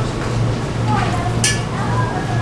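Distant speech of actors on a stage, faint under a steady low hum, with a brief sharp hiss about one and a half seconds in.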